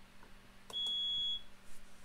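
IBM 3488 InfoWindow display station's alarm sounding one steady high-pitched beep of a little over half a second, starting just under a second in with a click at its onset. It is the alarm test as the alarm volume setting is stepped up, here to level 4.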